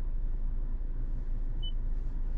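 Steady low rumble of a stationary car running, heard inside the cabin, with one short high electronic beep about a second and a half in.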